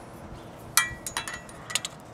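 A few light metal clinks as a steel rule is handled and laid against a painted steel hitch bracket. One sharper, briefly ringing clink comes just under a second in, followed by a handful of smaller ticks.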